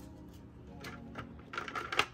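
Hands handling stiff laminated plastic cash-envelope placeholders and a metal keychain, making a few light clicks and taps. The sharpest click comes near the end. Faint background music plays underneath.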